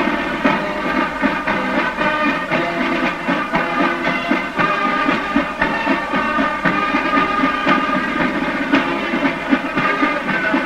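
Marching band music playing steadily, with sustained wind tones over a regular beat.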